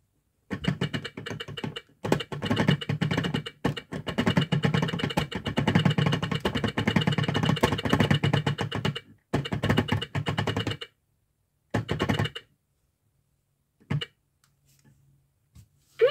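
Plastic gears of a toy teaching clock clicking rapidly as its hands are turned round the dial by hand, in several runs with short pauses, stopping about eleven seconds in. A couple of single clicks follow, then a faint low hum.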